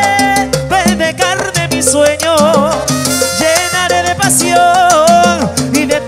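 Salsa orchestra playing live: an instrumental passage between sung verses, with melodic lines over a steady percussion and bass groove.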